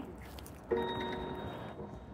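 A Waymo Jaguar I-PACE robotaxi sounds a single electronic alert chime from its exterior speaker. It starts suddenly and rings for about a second. The alert warns that a door or window has not been closed all the way.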